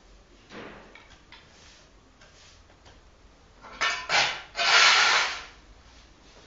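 Broom bristles sweeping litter across a concrete floor: a faint swish early, then near the end two short strokes followed by a longer, louder scrape.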